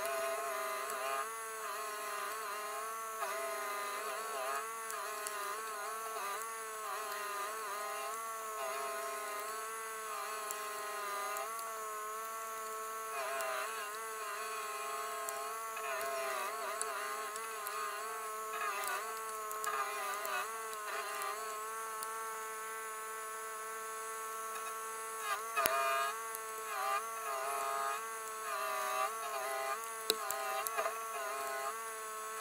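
Rayco RG1635 Super Jr. stump grinder running at high speed as its cutter wheel grinds into a stump. The engine's steady whine dips in pitch again and again as the wheel bites and bogs under load, then recovers. A sharp click comes late on.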